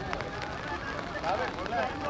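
Distant men's voices calling out across an open cricket field in short shouts, over a steady outdoor background.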